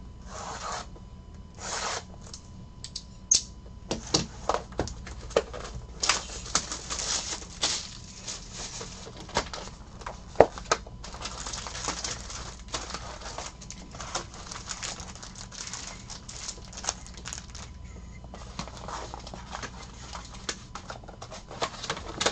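Plastic shrink-wrap torn off a trading-card hobby box, then foil card packs crinkling and rustling as they are pulled out of the cardboard box and stacked. The sound is a busy run of sharp crackles and snaps, with the loudest snap about halfway through.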